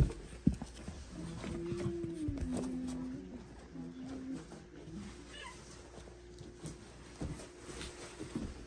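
Young French bulldog puppies, about three weeks old, whining and squeaking as they scuffle, with a sharp knock right at the start.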